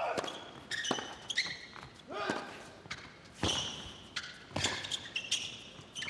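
Tennis rally on an indoor hard court: a serve, then racket strikes on the ball and ball bounces about once a second, with short high shoe squeaks on the court between the strokes.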